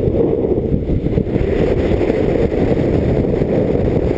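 Wind buffeting the microphone of a camera carried by a skier moving fast downhill: a loud, steady low rumble.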